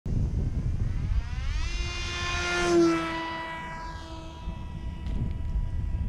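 Electric RC airplane's brushless motor and propeller whine. It rises in pitch about one and a half seconds in and is loudest as the plane passes close near the three-second mark, then drops in pitch and fades as it flies away. A low rumble runs underneath.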